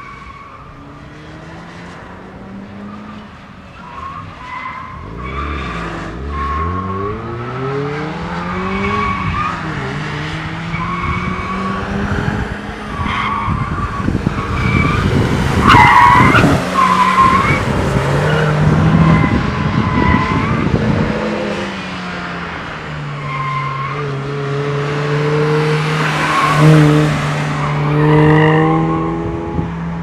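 Volkswagen GTI's turbocharged four-cylinder engine revving up and down as the car is driven hard through an autocross course, with the tyres squealing in many short chirps through the turns. Loudest as the car passes close about halfway through; near the end the engine holds a steadier note.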